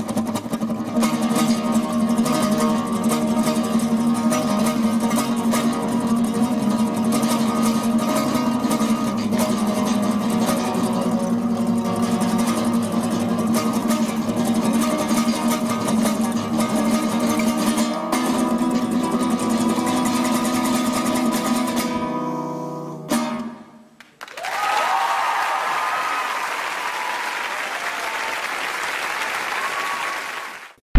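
Live solo guitar playing, an acoustic guitar to the fore, that stops about 22 seconds in. After a brief lull, the audience applauds and cheers.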